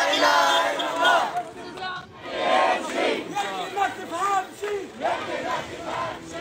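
Crowd of street protesters shouting, many voices overlapping, loudest at the start and then coming in bursts.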